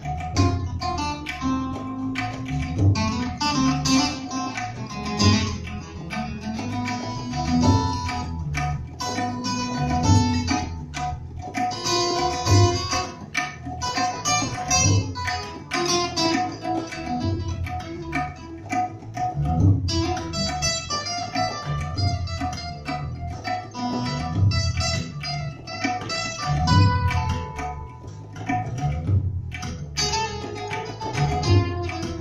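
Live instrumental ethnic music: tabla, acoustic guitar and electric bass guitar playing together, with the bass and the tabla's low drum keeping a steady pulse under plucked guitar notes and quick tabla strokes.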